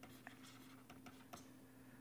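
Near silence: faint taps and scratches of a stylus writing on a tablet screen, over a low steady hum.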